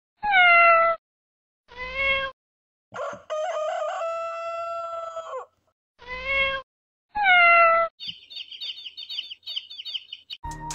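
Cat meows and a rooster crowing: two meows, a long crow starting about three seconds in, two more meows, then quick high chirps over the last two seconds.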